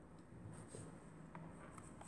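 Near silence in a small room, with a few faint, scattered clicks over a low steady hum.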